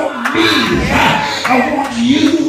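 Loud, excited shouting voices of a Pentecostal church service, drawn-out cries rather than clear words, with the crowd-like ring of a hall full of people.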